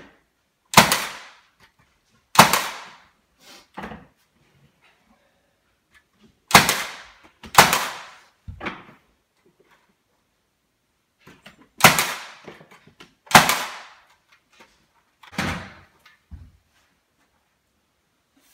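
Senco cordless 18-gauge brad nailer firing into baseboard trim: seven sharp shots at uneven intervals, with a few fainter knocks between them.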